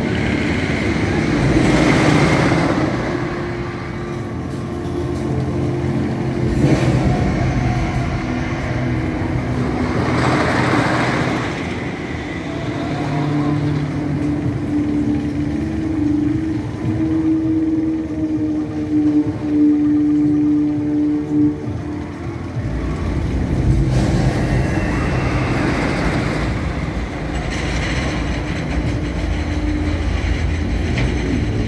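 Wicker Man wooden roller coaster trains rumbling along the wooden track, swelling and fading as they pass a few times, over a steady low drone.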